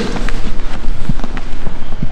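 Two grapplers rolling over on a foam mat: scuffing and rustling of bodies and clothing, with many short irregular knocks and rubs.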